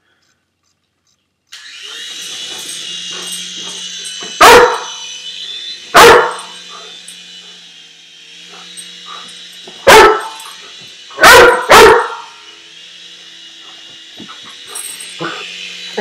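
A Weimaraner puppy barking loudly five times over the steady high whine of a small remote-control toy helicopter's electric motor and rotor, which starts about a second and a half in.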